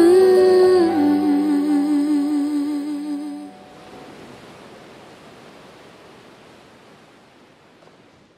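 The song's closing wordless vocal note slides up and is held with a steady vibrato over sustained backing chords. The music stops about three and a half seconds in, leaving a soft, even wash of noise that fades out.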